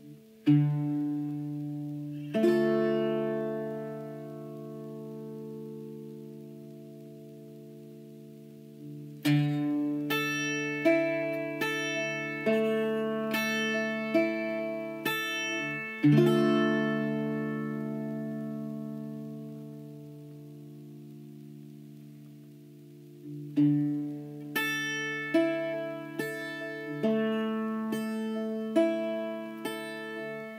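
Irish bouzouki played solo: two strummed chords near the start left to ring, a run of plucked notes over ringing strings, a long chord dying away, and more plucked notes near the end.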